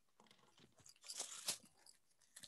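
Faint handling noise near the microphone: a brief cluster of crackles and clicks about a second in, ending in a sharper click.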